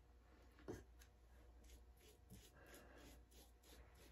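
Very faint scratching strokes of a paintbrush spreading chalk paint over the bottom of a heart-shaped box, with one light knock under a second in.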